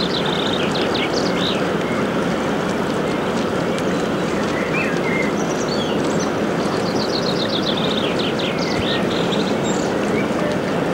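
Steady rushing noise of river water and the wash of a passing inland motor cargo ship. A small bird sings repeated trills over it, briefly at the start and again near the end.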